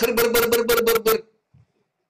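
A man's voice making a quick run of short repeated syllables on one held pitch, stopping a little over a second in.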